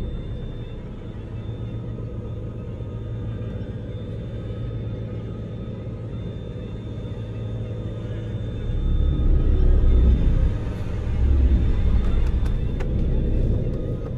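Low, rumbling drone from a horror film's sound design, with a faint thin high tone held above it. It swells louder for the last five seconds or so.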